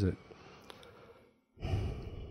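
The tail of a spoken word, a short near-silent pause, then a person's breathy sigh starting about one and a half seconds in.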